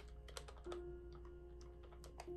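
Keys of a plastic desktop calculator pressed in quick succession, a run of faint, irregular clicks.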